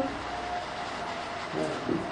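A pause in a man's sermon, filled by the steady hiss of the recording. His voice starts again faintly near the end.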